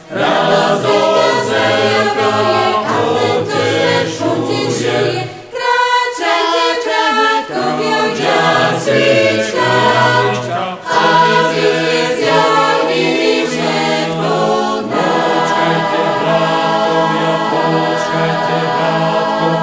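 Church choir singing in harmony over a held low bass line, with a short dip in the sound about five and a half seconds in.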